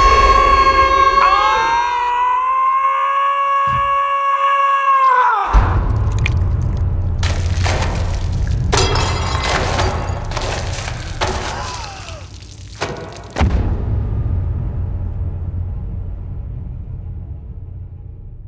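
A long, high scream held steady for about five seconds, cut off by a sudden rumbling blast. Shattering and a string of crashes and thuds follow, with one last heavy thud before the sound fades away.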